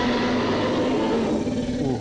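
A steady engine drone with a hiss, holding one pitch, then dipping slightly and easing off near the end.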